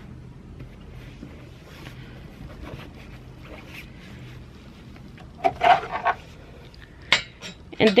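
Faint handling noise and scattered light clicks over a steady low hum, a short burst of a person's voice about five and a half seconds in, and a sharp click about seven seconds in.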